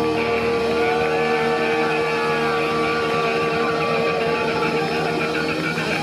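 Live rock band music: sustained guitar chords and a long held note, with slow sliding notes above them and no clear drumbeat.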